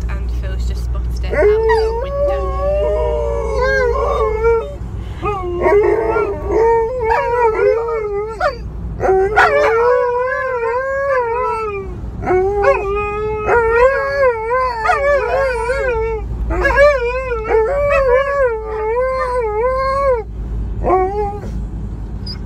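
An Alaskan malamute howling over and over in the cabin of a camper van, long wavering howls one after another, worked up by something spotted out of the window.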